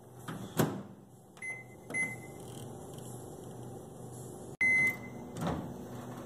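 Microwave oven being operated: a thump about half a second in, two short beeps, then a louder, longer beep near the end, followed by another thump as the door is handled, over a low steady hum.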